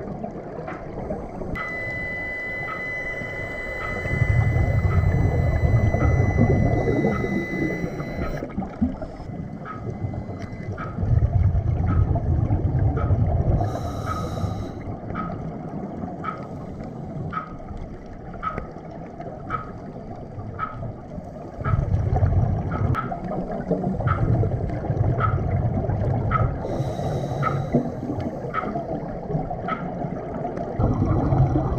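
Underwater recording of a scuba diver breathing through a regulator: exhaled bubbles rumble in long bursts every several seconds, with a short hiss near the middle and again near the end. A faint, even ticking runs underneath, about one and a half ticks a second.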